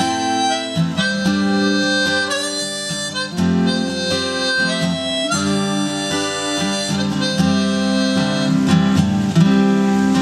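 Harmonica in a neck rack playing the melody over strummed acoustic guitar: the instrumental introduction of a folk song.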